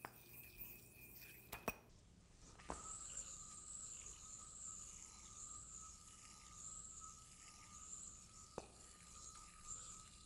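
Near silence. A faint high whine wavers up and down about once a second as a spinning metal yoyo is swung in pinwheel arcs on its string, with a few soft clicks.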